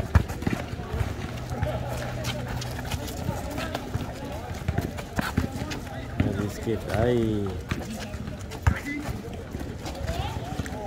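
Basketball dribbled and bouncing on an outdoor asphalt court, with a loud bounce right at the start and scattered bounces and sneaker footsteps after it. Players call out, with a shout of "Yeah!" about seven seconds in.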